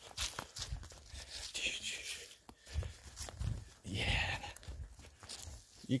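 Bare feet stepping and sliding down a steep slope thick with dry pine needles: irregular rustles and crunches with dull thumps.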